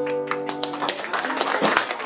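A live band's final chord rings out on guitars and keyboard and dies away within the first second, followed by a scatter of sharp taps.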